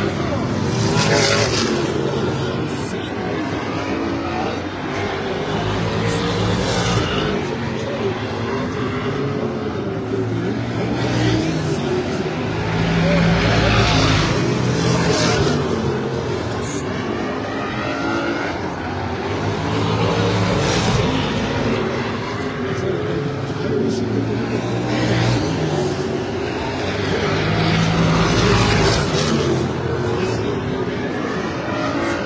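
Limited late model stock cars racing around a short oval, their engines swelling and fading every several seconds as the cars go past.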